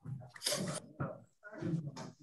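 Faint, broken fragments of speech coming through a video-call audio feed, with a short hiss about half a second in.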